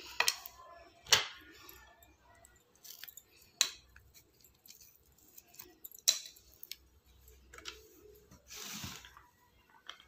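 Scattered clicks and taps of a kitchen knife against a plate and a plastic blender jar as chopped dates are cut and dropped in, with a short scraping rustle near the end.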